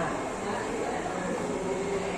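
Steady background noise of a billiard hall, with faint voices in it. No ball strike is heard.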